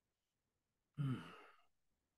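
A person sighing once over a video call: a short voiced exhale about a second in that falls in pitch and trails off.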